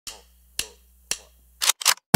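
Three sharp clicks about half a second apart, then two short hissing bursts near the end, over a faint low hum.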